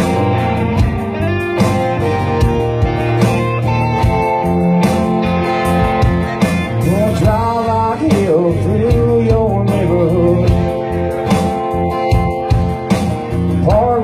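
Live country-rock band playing an instrumental passage: strummed acoustic guitar and electric lead guitar with bending notes over a steady drum beat.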